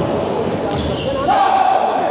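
Table tennis ball knocking on the table and bats during a rally, with voices in the hall.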